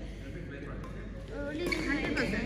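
Badminton doubles rally: rackets striking the shuttlecock and shoes on the court, with voices talking in the hall in the second half.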